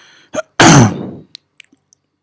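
A person sneezing once: a short catch of breath, then one loud, sudden burst whose pitch falls away over well under a second. A few faint clicks follow near the end.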